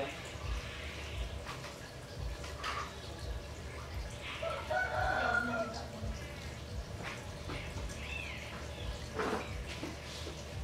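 A fowl crowing once, a drawn-out call about halfway through, over a steady low hum; a short rising-and-falling chirp follows near the end.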